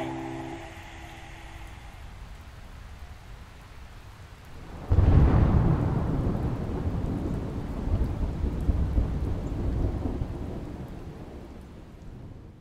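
Steady rain, then about five seconds in a sudden loud clap of thunder that rolls on for several seconds and slowly dies away. The last chord of the music ends in the first moment.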